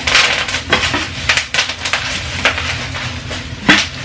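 Cookware being handled: pots and lids clinking and knocking, with plastic wrapping rustling. It comes as a run of sharp knocks, with the loudest knock a little before the end.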